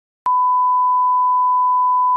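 Colour-bar test tone: one steady, unwavering beep that starts abruptly with a click about a quarter of a second in.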